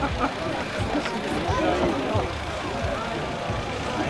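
Crowd of people talking at once outdoors, with scattered voices over a steady low rumble.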